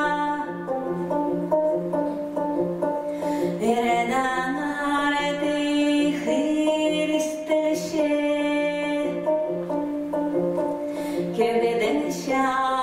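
Khakass khomys, a plucked-string lute, played over a steady low drone with held, shifting notes. A woman's singing voice joins in at times, the start of an epic chant.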